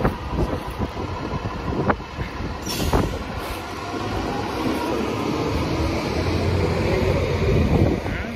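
City traffic noise with a heavy vehicle rumbling past, growing louder over the last few seconds. A couple of sharp knocks come in the first three seconds.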